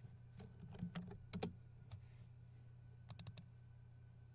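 Faint clicking at a computer: a few scattered clicks in the first second and a half, then a quick run of four about three seconds in, over a low steady hum.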